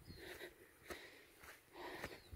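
Near silence: faint outdoor background with a couple of soft breaths close to the microphone and a small click about a second in.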